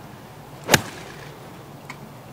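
Golf iron striking the ball on a 155-yard approach shot: a single sharp crack about three quarters of a second in.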